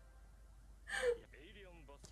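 A woman's single short, breathy gasp of laughter about a second in, with faint voices underneath.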